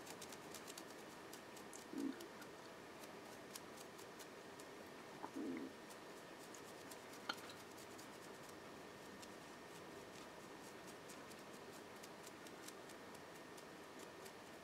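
Very quiet room with faint light ticks and scratches of a stiff dry brush being flicked over the railings of a small resin gate piece. There are two soft low bumps, about two and five seconds in, and a single click about seven seconds in.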